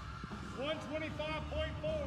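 A voice speaking faintly, starting about half a second in, with low background hum.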